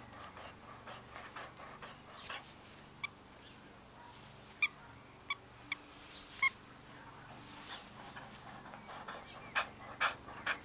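Welsh springer spaniel playing tug with a plush toy ball, making soft irregular breathing and mouthing sounds. About five short, sharp high-pitched squeaks stand out in the middle.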